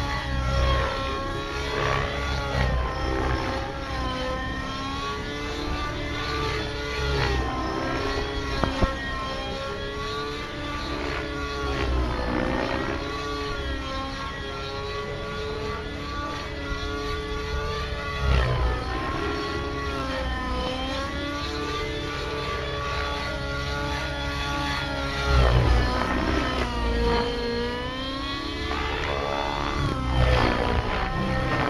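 Radio-controlled model helicopter with a smoking nitro engine, flying aerobatics. Its engine and rotor whine rises and falls in pitch all the time as it manoeuvres, with louder swells about two-thirds of the way through and near the end.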